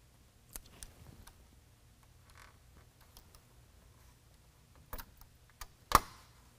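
Scattered light clicks and taps of a mesh bug screen and its plastic snap-in fasteners knocking against a pickup's plastic grille as the screen is lined up, with a sharp, louder click just before the end.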